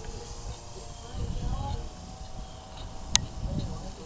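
Wind rumbling on the microphone, under the faint steady whine of a battery-powered radio-controlled model airplane flying overhead. A sharp click a little after three seconds in.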